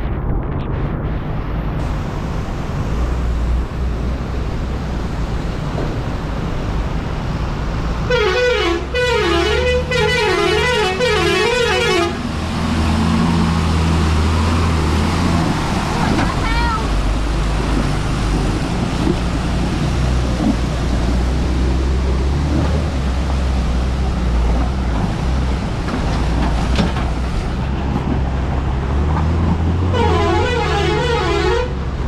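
Bus engine running with a steady low rumble on a muddy mountain road. Its horn sounds a loud warbling tone for about four seconds roughly a third of the way in, and starts again at the very end.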